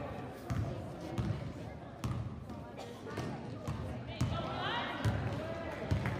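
Basketball bounced repeatedly on a gym floor as it is dribbled up the court, over the voices of players and spectators.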